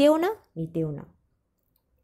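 A woman's voice reading a story aloud in Bengali, a few words, then it stops about a second in, leaving a pause.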